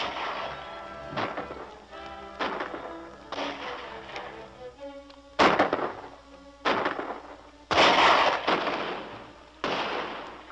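A run of gunshots, about eight in ten seconds, each cracking out with a long echoing tail, over film score music. The loudest shots come about five and a half and eight seconds in.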